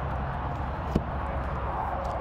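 Steady low outdoor rumble with a single sharp click about a second in from the small sliding bus window of a horse trailer's front window being worked by hand.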